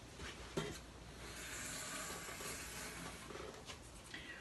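A hand wiping across the surface of a clay slab: a soft, steady hiss lasting about two seconds, after a light click just over half a second in.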